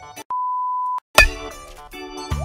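A single steady electronic beep at one pitch, lasting under a second, in a short break in the background keyboard music. The music cuts out just before the beep and comes back with a loud hit shortly after it.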